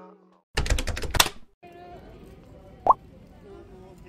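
About half a second in, a quick run of loud, sharp clicks and knocks lasts about a second. Busy street ambience with faint passers-by's voices follows, and one short rising chirp sounds near the three-second mark.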